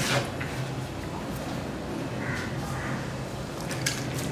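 A hand rubbing and mixing maida flour in a plastic bowl: soft, low rustling and scraping, with a light knock at the start and another just before the end.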